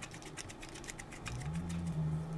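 Faint small clicks of a GoPro mounting thumbscrew being turned by hand to fix the camera to a gimbal. About a second and a half in, a low, steady hum starts and holds.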